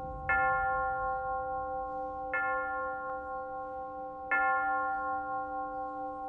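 Slow intro music: a bell-like chime strikes the same ringing chord three times, about two seconds apart, each strike sustaining and fading into the next.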